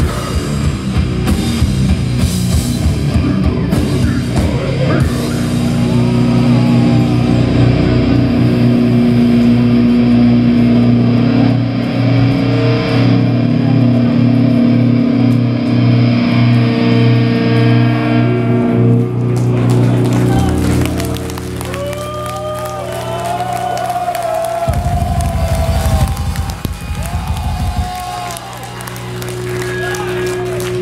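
Metalcore band playing live: drums and distorted electric guitars, then long held guitar chords ringing on. In the second half the music thins out into short sliding guitar tones and a low rumbling burst.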